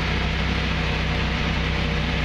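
A steady low mechanical hum with an even hiss, holding level and unchanged throughout.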